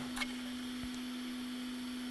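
Steady electrical hum, a single unchanging low tone, over faint hiss, with a faint click near the start.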